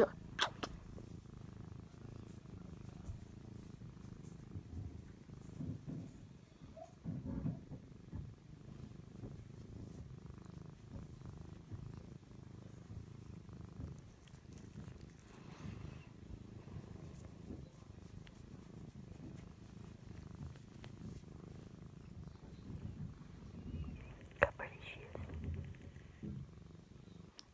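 Domestic cat purring steadily, close to the microphone, while being stroked, with a single sharp click near the end.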